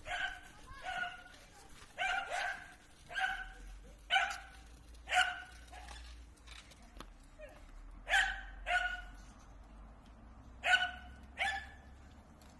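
A dog barking repeatedly, about ten short barks, often in quick pairs, with a pause of a couple of seconds in the middle.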